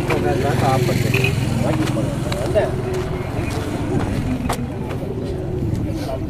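A steady low engine hum from road traffic, with voices talking indistinctly over it.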